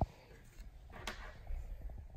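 Quiet room tone with a sharp click right at the start and one short scraping noise about a second in.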